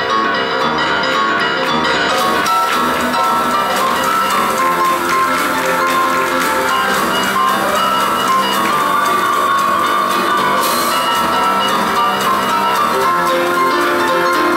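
Two grand pianos playing a fast boogie-woogie duet with a drum kit keeping time. The bright cymbal sound grows about two seconds in and again near the end.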